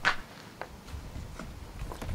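Handling noise as a large wooden LED sign panel is tilted upright onto its base frame: a sharp knock at the start, then a few faint scattered knocks and rustles.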